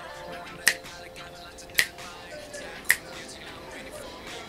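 A T-pop song playing with a sharp finger snap about every second, three snaps in all, each much louder than the music.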